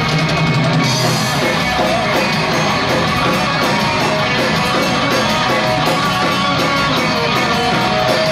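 Live rock band playing: electric guitar over a drum kit, with evenly repeating cymbal strokes.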